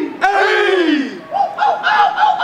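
Young men shouting fraternity calls: one long yell that falls in pitch, then a quicker run of shorter shouted calls from about one and a half seconds in.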